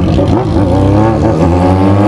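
Yamaha XJ6's inline-four engine running steadily under light throttle while riding, its note rising a little.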